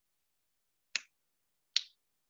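Two short, sharp clicks, one about a second in and one near the end, each dying away quickly.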